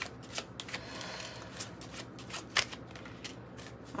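A deck of oracle cards being shuffled by hand, with irregular soft slaps and clicks of the cards, and cards set down on a wooden table.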